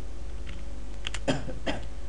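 Two quick computer keyboard key presses about a second in, then two short throaty vocal noises, over a steady electrical hum.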